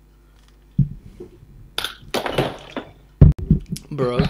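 A plastic drink bottle being handled: a knock about a second in, crackling plastic through the middle, then two sharp, loud knocks near the end.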